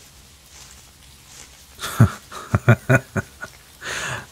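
A man's deep, breathy chuckle: a short run of quick laugh pulses starting about halfway through, then a breath near the end.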